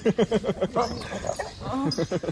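A dog's rapid string of short, falling whining yelps, about a dozen a second. One run comes in the first half-second and another near the end.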